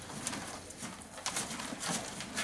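A horse chewing its feed close by: soft, irregular crunching.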